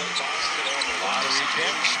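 Basketball dribbled a few times on a hardwood court by a player at the free-throw line, under steady arena crowd chatter.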